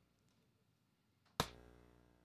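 After near silence, a single sharp hit about 1.4 s in, ringing briefly with a pitched tone as it dies away. It is an impact sound synthesized by a model trained on drumstick strikes, played over a hall's loudspeakers.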